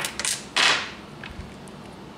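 Polished tumbled stones knocking and sliding against each other as a hand picks through a pile of them: a few sharp clicks at the start, then a short scraping clatter about half a second in.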